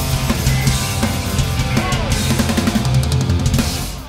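A punk rock band playing live, with electric guitars, bass and a hard-hit drum kit and no singing. The band breaks off near the end.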